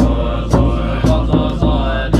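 Tibetan Buddhist monks chanting in low voices, with a drum struck in a steady beat about twice a second.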